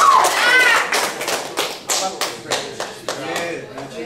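Scattered hand clapping from a few people: irregular sharp claps for about two and a half seconds, thinning out near the end.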